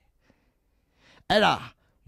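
Near silence, then about a second and a quarter in a man's voice gives one short voiced sound, like a sigh or an 'ah', its pitch falling.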